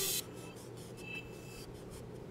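Faint rubbing of a damp cotton swab against a painted wall at a baseboard corner.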